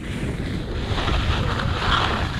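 Wind buffeting the microphone as it moves fast down a ski slope, a heavy low rumble, with the hiss and scrape of edges sliding over packed snow that grows brighter near the end.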